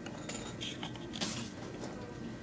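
A few light clicks and clinks of small hard objects being handled, spread irregularly over a quiet room with a faint steady hum.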